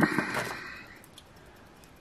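A paper scratch-off ticket being slid off a wooden tabletop: a brief papery rustle that starts sharply and fades within about a second, followed by a few faint handling ticks.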